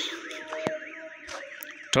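A warbling electronic alarm, its pitch sweeping up and down about four times a second, with a single sharp click about two-thirds of the way in.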